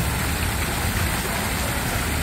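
Steady splashing of a fountain jet falling into its pool, with a constant low rumble underneath.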